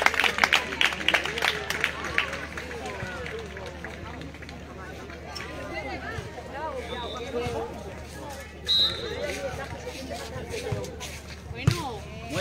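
Voices and chatter of players and spectators around an outdoor sand volleyball court, faint and scattered rather than close speech. Sharp claps or hits in the first two seconds, and a short high tone twice, about seven and nine seconds in.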